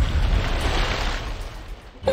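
A rushing whoosh that fades away steadily over about two seconds.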